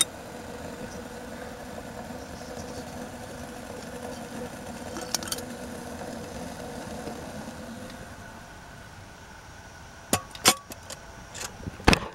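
Esbit brass alcohol burner heating a lidded steel mug of water: a steady hiss with a faint hum that drops away after about eight seconds. A few sharp metallic clinks follow near the end, one of them ringing briefly.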